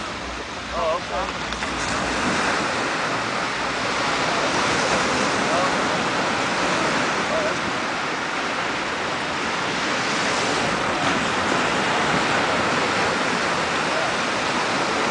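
Sea surf washing in small waves, a steady rushing hiss that swells and eases slowly. Faint voices are heard briefly about a second in.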